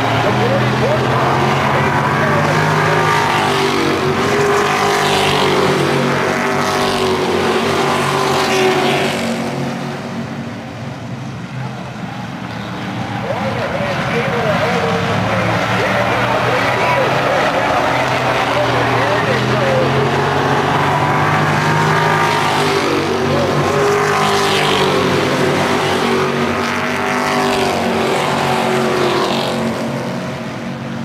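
A field of stock cars racing around an oval, their engines revving and surging as the pack passes, dropping for a few seconds about a third of the way through before building again.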